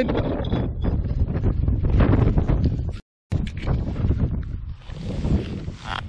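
Wind buffeting the microphone: a steady low rumble with scattered rustles and knocks of handling. The sound drops out completely for a moment about halfway through.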